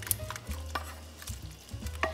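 Wooden spatula scraping sausage and vegetables out of a skillet into a pot of simmering roux, with a few short sharp scrapes and taps against the pan.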